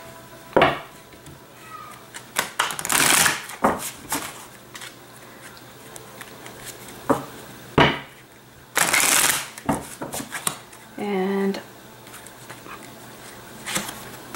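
A deck of oracle cards being shuffled by hand, in a few short spells of rustling card noise with a couple of sharp clicks in between.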